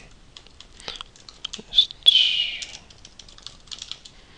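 Typing on a computer keyboard: a run of quick, uneven keystroke clicks. About two seconds in comes a brief, louder high-pitched sound that falls in pitch.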